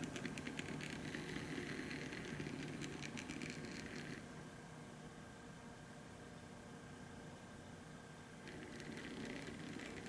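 12 V stepper motor driven by an Adafruit Motor Shield, stepping with a faint, fast ticking buzz. About four seconds in the ticking turns quieter and duller as the motor settles to a slower speed, picking up a little near the end.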